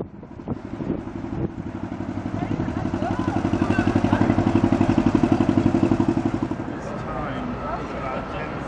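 Narrowboat diesel engine chugging with a fast, even beat as the boat passes close, growing louder to a peak after the middle and then fading.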